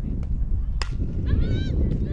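A softball bat strikes the pitched ball once with a sharp crack about a second in, quickly followed by high-pitched shouting voices, over a steady low rumble.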